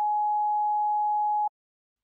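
Censor bleep: a single steady pure tone, just under 1 kHz, covering the interviewee's words, cutting off sharply about one and a half seconds in.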